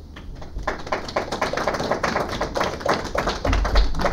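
A fast, irregular run of sharp taps starts about half a second in, with a heavier low thump near the end.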